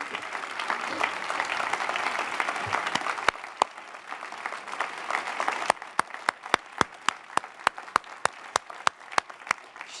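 Audience applause, a dense patter of many hands that swells and then thins out after about five seconds. It gives way to separate sharp claps from just a few hands, evenly spaced at about four or five a second.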